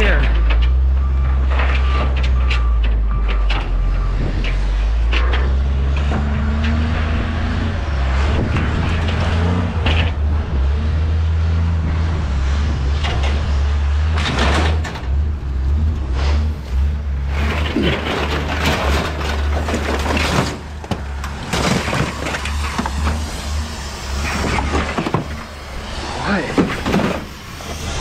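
Scrap metal being pulled off a trailer and tossed onto a scrap-yard pile, with clanks and rattles that come thick and fast in the second half. Under it runs the steady low rumble of an engine.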